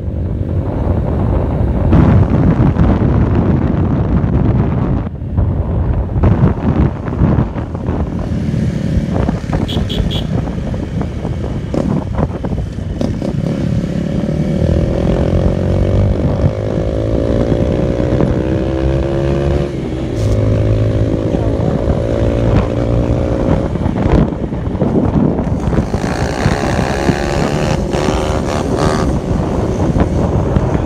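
Wind buffeting the microphone on a moving motorcycle, mixed with a small motorcycle engine running under way. Through the middle stretch the engine note stands out, rising and then holding steady.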